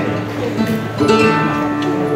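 Acoustic flamenco guitar playing a short passage between sung lines, with a new chord struck about a second in.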